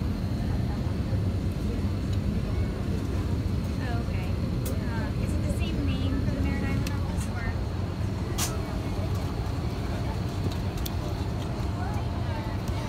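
Steady low background rumble with faint, indistinct voices of other people talking and a few soft clicks.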